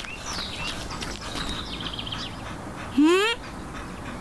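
Birds chirping lightly in the background, then about three seconds in a short, loud cry that rises quickly in pitch.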